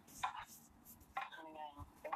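A woman's voice speaking softly in Khmer in short broken phrases, close to a clip-on microphone.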